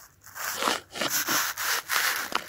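Rubbing and crackling handling noise close to the microphone, in irregular short bursts, as a clear plastic cup is rubbed against the phone.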